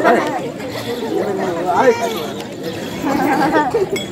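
Speech: stage dialogue spoken in Tamil by the performers, with short pauses between phrases.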